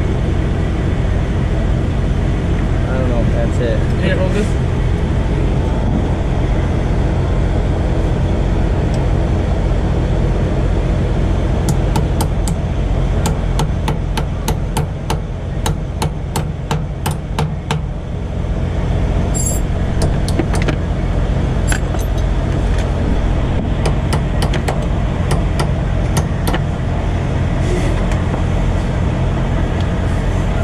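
A hammer tapping a punch on the truck's differential in quick, sharp metallic strokes, a few a second, in two runs through the middle of the stretch, working broken driveline pieces free. A steady low engine drone runs underneath.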